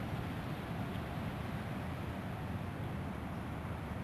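Steady low background noise with a hiss and a low rumble, with no distinct sound events.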